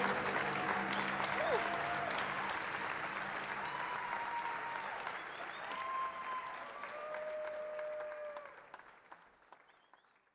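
Theater audience applauding at the end of a live set. The applause fades out about eight and a half seconds in.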